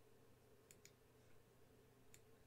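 Near silence with two faint, quick computer mouse clicks shortly after the start.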